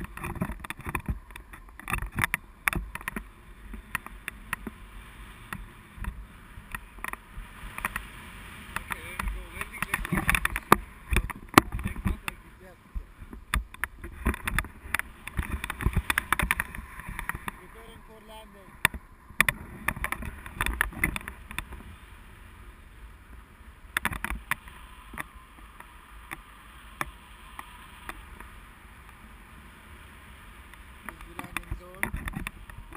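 Airflow buffeting an action camera's microphone in paraglider flight: a rough, gusty rush broken by frequent uneven crackles and thumps.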